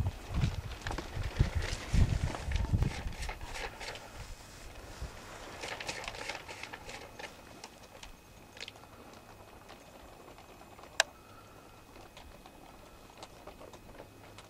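Footsteps and rustling on straw-covered ground, irregular thumps for the first few seconds, then quieter handling noise, with a single sharp click near the end.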